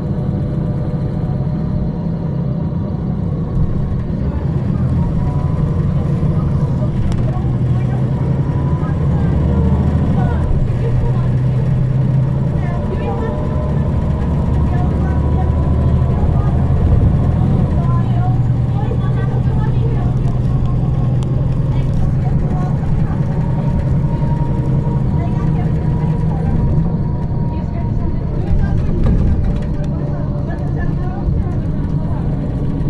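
Onboard recording of a 2009 MAN 18.310 HOCL-NL compressed-natural-gas city bus under way: a steady low engine drone with a faint whine from the driveline and ZF Ecomat automatic gearbox that drifts up and down in pitch. The drone grows heavier for a stretch in the middle, then eases.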